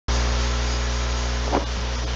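Steady electrical mains hum with constant hiss on the recording, with one brief faint tick about one and a half seconds in.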